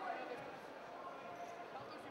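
Indistinct voices and shouts echoing in a large sports hall, with a few dull thuds of the wrestlers moving and grappling on the mat.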